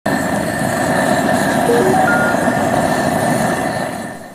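Rat-burrow fumigator blowing sulfur smoke into a rat hole, running with a loud, steady mechanical noise that fades near the end. A few short, stepped tones sound about halfway through.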